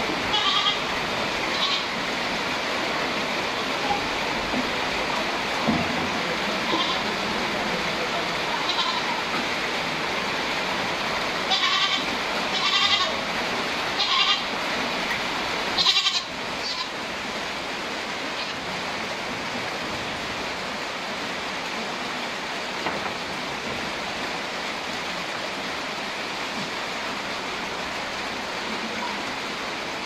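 Goats bleating now and then, several short high calls that come thickest about halfway through, over a steady rushing background noise.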